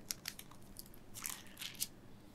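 Faint, scattered small clicks and rustles during a pause in speech.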